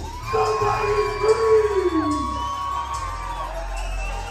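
Dubstep DJ set over club speakers: a held synth note slides down in pitch about two seconds in, over a steady low bass. A crowd cheers over the music.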